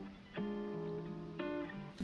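Background music: soft guitar chords, with a new chord plucked about a third of a second in and another about a second and a half in.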